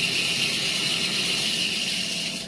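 Milling machine running steadily, spinning a length of stainless tubing held in a collet, with an even hiss and a high whine.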